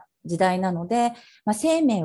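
A woman speaking, with two brief pauses.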